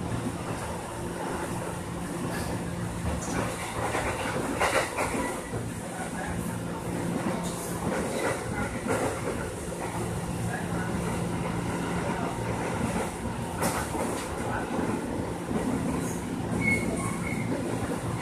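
Electric commuter train running, heard from inside the carriage: a steady rumble of wheels on rail under a low hum, with a couple of sharp clacks about five and fourteen seconds in.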